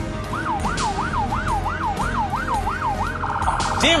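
Police car siren in yelp mode, its pitch sweeping up and down about three times a second, switching to a much faster warble about three seconds in.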